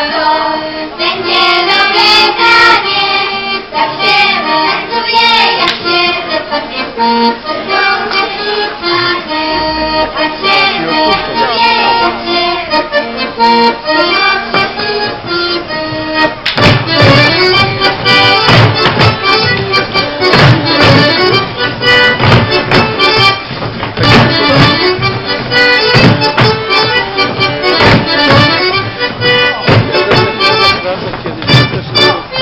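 Accordion playing a lively Polish folk dance tune from the Kielce region, amplified through the stage speakers. From about halfway through, a strong rhythm of low thumps joins in time with the dance.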